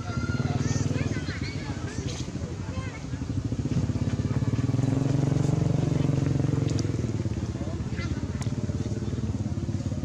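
A small engine running steadily, growing louder from about four to seven seconds in, with a few faint high chirps near the start.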